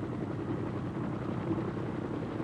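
Piasecki tandem-rotor helicopter running steadily while hovering, a continuous engine and rotor hum with no sudden changes.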